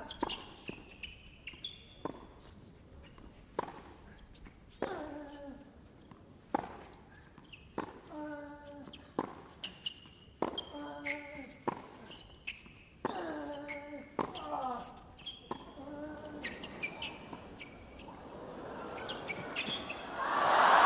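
Tennis rally on a hard court: repeated racket strikes on the ball and ball bounces, with players grunting on their shots and shoes squeaking. Near the end the crowd noise starts to swell.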